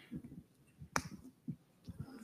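Faint, scattered low knocks and one sharp click about a second in, in a quiet room.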